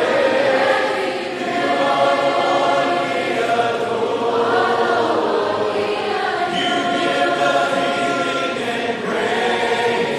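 Many voices singing a worship song together, with long held notes.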